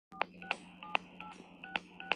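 Telephone keypad being dialled: about five quick key presses, each a short two-tone touch-tone beep with a sharp click of the button, over a low steady hum. The keys are keyed into a voicemail system to play back saved messages.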